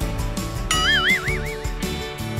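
Background music with a steady beat. Under a second in, a high wobbling tone comes in, wavers up and down about four times, and fades.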